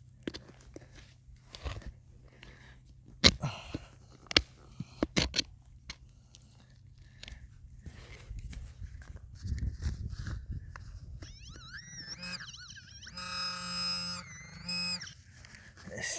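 Spade digging in stony soil: several sharp knocks and crunches in the first half, then a low rumbling scrape. In the last few seconds there is a warbling high tone, then a buzzing tone.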